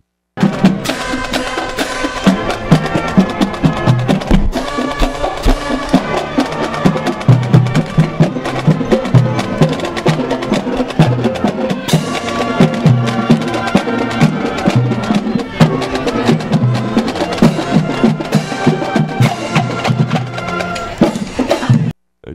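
Marching band playing on the march: brass and winds over snare and bass drums keeping a steady beat.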